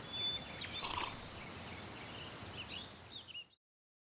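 Outdoor park ambience: a faint background hush with scattered small birds chirping in short high calls, several in quick succession near the end. It cuts off suddenly about three and a half seconds in.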